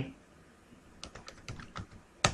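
Computer keyboard keys being typed: a quick run of about half a dozen keystrokes starting about a second in, as a name is typed at a terminal prompt.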